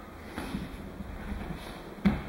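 Cloth of martial-arts uniforms rustling and bare feet moving on padded mats as an attacker closes in and is taken into a throw, with a few soft thumps about half a second in and again near the end.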